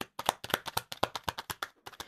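A tarot deck being shuffled by hand: a rapid run of crisp card clicks, around a dozen a second, that stops shortly before the end.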